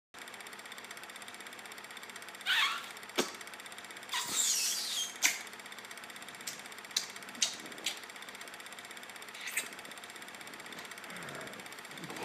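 Steady, rapid clatter of a film projector, the sound effect of a vintage-film filter, with scattered clicks and pops like old-film crackle. Two louder brief noises stand out, about two and a half and four seconds in.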